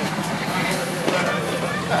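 V8-engined Jeep CJ5 running steadily at low revs as it crawls up slippery rocks.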